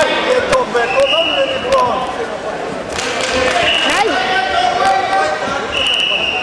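Wrestling bout on a mat in a sports hall: voices calling out from around the mat over sharp knocks and thuds of bodies and feet on the mat, with three short, steady high-pitched squeaks or whistle-like tones, the hall's echo on everything.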